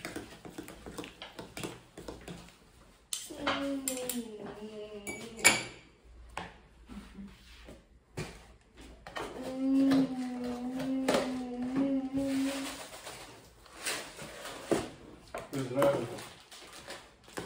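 A metal spoon stirring, scraping and clinking in a plastic mixing bowl, with scattered light taps. A voice speaks or hums in two stretches, and one sharper clack about five and a half seconds in is the loudest sound.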